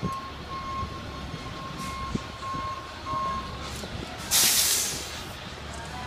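Aerosol spray-paint can hissing in one loud burst of just under a second, about four seconds in, over a steady low traffic rumble. A faint high beeping tone comes and goes in the first half.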